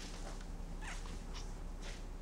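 A woman's three short, faint breaths as she holds back tears, over a low steady room hum.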